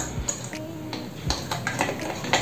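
Light plastic clicks and taps from handling a power adapter while its removable plug head is swapped for an Indian-style plug, several scattered clicks.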